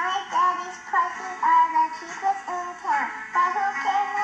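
A four-year-old girl's high-pitched voice delivering a radio commercial for a flower shop, with music.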